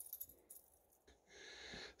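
Near silence: a few faint soft clicks in the first half second, then a faint hiss near the end.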